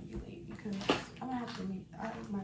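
A young woman talking at an ordinary level, speech that was not transcribed, with one short sharp sound a little under a second in.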